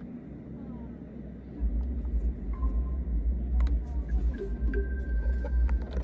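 Low rumble that grows louder about a second and a half in, with two faint brief steady tones and a few small clicks.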